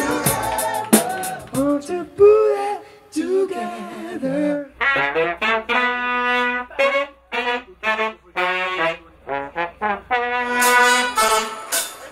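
Horn section of saxophone, trumpet and trombone playing short, punchy ensemble phrases, with a few longer held notes. Drum hits and the band sound in the first couple of seconds.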